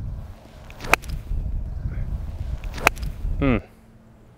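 Golf iron striking the ball and turf once, a sharp crack near the end that takes a divot on a crisp, well-struck shot. A fainter click comes about a second in, under a low steady rumble.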